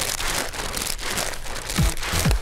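A paper bag crinkling and rustling, as if being breathed into in a comic panic.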